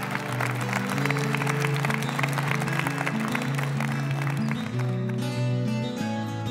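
Audience applauding over instrumental music with held chords; the applause stops about five seconds in and the music carries on.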